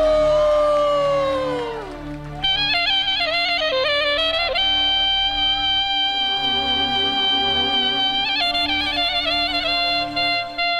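Wedding band music: the lead melody opens with a long note that slides down in pitch, then turns into quick ornamented runs and a long held note over a steady accompaniment.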